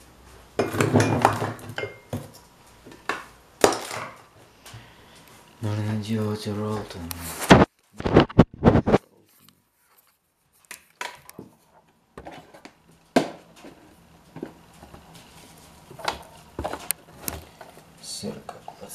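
Kitchenware being handled: dishes and utensils clatter and clink, with a few sharp, loud knocks about eight seconds in and scattered lighter clinks after. Indistinct muttering comes near the start and again around six to seven seconds in.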